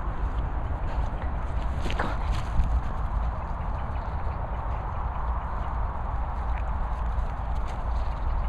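Footsteps and rustling on grass over a steady low rumble.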